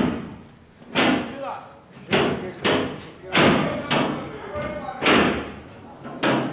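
A series of heavy thuds, about seven in six seconds at an uneven pace, each ringing on briefly in the room, with short vocal sounds between them.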